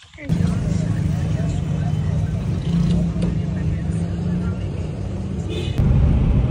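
Suzuki hatchback on the move, heard inside the cabin: a steady low rumble of engine and road noise that starts suddenly just after the beginning and grows a little louder near the end.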